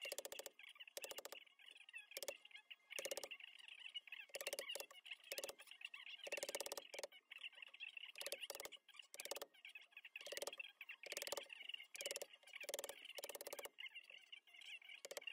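Wooden mallet striking a mortise chisel as it is driven into a hardwood beam to chop a mortise: a series of sharp knocks, roughly one a second at an uneven pace.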